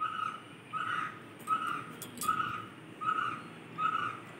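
A bird repeating one short, steady whistled note about once every three-quarters of a second, six times.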